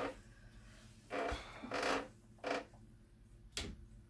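Faint, scattered handling noises of a person settling onto a wooden organ bench: a few soft rustling sounds, then a short click near the end.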